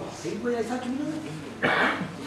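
A man's voice speaking on stage, low and drawn out, then a short, loud, harsh throat-clearing sound near the end.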